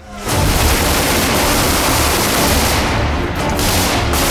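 Dense, continuous gunfire from a firefight, starting abruptly a moment in and staying loud.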